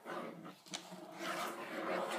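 Crayon scribbling rapidly back and forth on paper over a plastic high-chair tray, a rough rasping scrub, with a sharp tap about a second in and a brief vocal sound.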